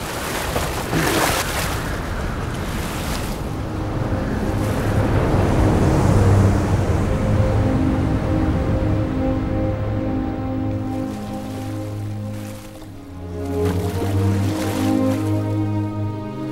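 Ocean surf breaking, then a lush film score comes in about four seconds in with long held low notes, the surf fading beneath it.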